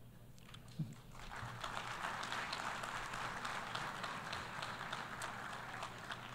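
Audience of delegates applauding, the clapping building about a second in and then holding steady.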